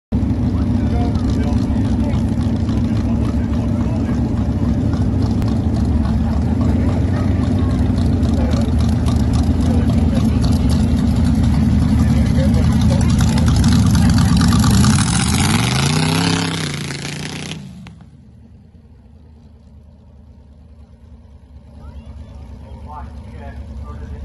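Freshly restored dragster's engine running loud and steady at the start line, then rising in pitch as the car launches about fifteen seconds in. The sound drops away sharply a couple of seconds later, leaving a low background with voices near the end.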